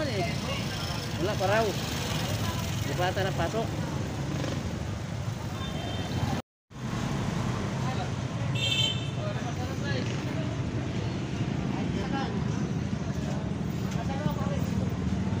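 Street traffic noise: a steady low rumble of vehicles, with people's voices in the first few seconds. The sound cuts out completely for a moment about halfway through.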